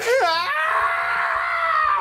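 A long, high-pitched scream in a cartoonish voice. It wavers at first, is then held while falling slowly in pitch, and breaks off.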